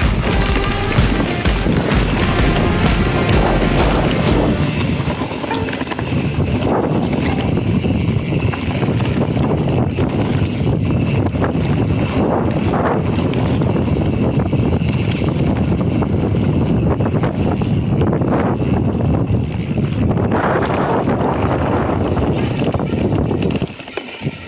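Background music with a steady beat for the first few seconds, then a continuous rushing noise: wind on the camera's microphone and the rolling of a Specialized Epic Expert mountain bike's tyres down a dirt trail covered in dry leaves.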